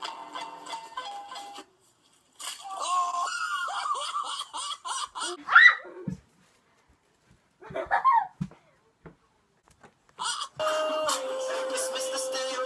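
Audio from short comedy clips in quick succession. A snatch of music comes first, then a voice with a sharp, high, rising shriek about five and a half seconds in, a short cry around eight seconds, and a steady held musical tone near the end.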